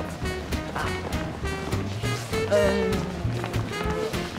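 Swing band music with a steady beat, played for dancing.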